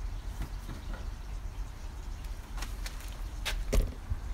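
Handling noise from the recording device as a person comes right up to it: a few clicks and knocks, the loudest near the end, over a steady low outdoor rumble.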